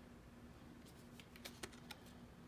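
Faint handling of a small printed paper card as it is turned over in the fingers: starting about a second in, several light ticks and taps over an otherwise near-silent room.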